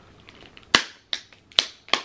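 Clear plastic dome lid of a packaged soft-serve ice cream cone clicking as it is handled: four sharp separate clicks, less than half a second apart, from just under a second in.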